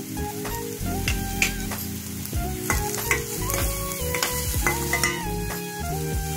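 Chopped onion, capsicum and tomato sizzling in oil in a steel kadhai, stirred with a metal spoon that scrapes and clicks against the pan several times. Soft background music with steady sustained notes runs underneath.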